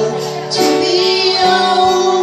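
Several women singing a song together in sustained, held notes.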